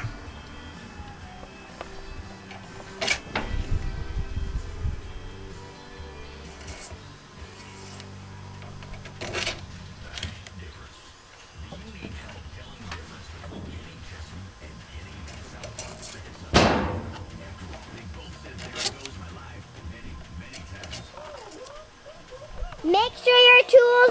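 Pen-turning parts being handled on a wood lathe: brass bushings and wooden pen blanks slid onto the mandrel, with a few sharp metallic clicks and light knocks as they seat.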